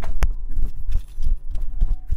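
Footsteps and knocks on a bare hard floor: an irregular run of thumps, with one sharp click just after the start.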